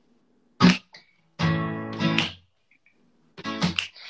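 Acoustic guitar strummed to open a song: a short sharp strum about half a second in, a longer ringing chord a second later, and a few quick strums near the end, with silent gaps between.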